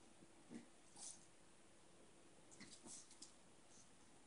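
Quiet room with a few faint, short sounds from dogs at play on a tile floor: soft huffs and clicks, one about half a second in, one about a second in, and a small cluster about three seconds in.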